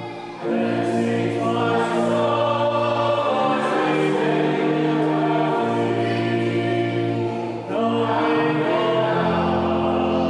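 A congregation singing together, long held notes in phrases with a brief break for breath just after the start and again near eight seconds in.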